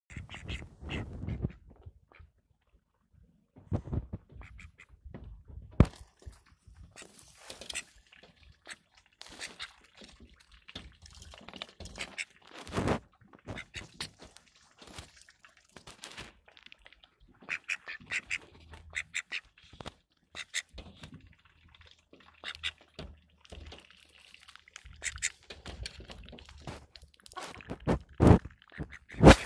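White call ducks quacking in short, scattered calls, in quick runs in places, with a few sharp knocks in between.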